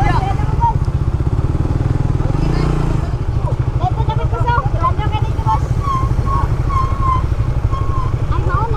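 Motorcycle engine running at low speed with a fast, even pulse as the bike rolls slowly, with people's voices around it.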